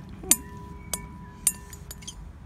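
Clear glass mixing bowl clinking as slime is stirred in it: three sharp knocks about half a second apart, the bowl ringing on for over a second after the first.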